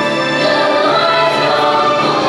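Children's choir singing in harmony, holding long sustained notes.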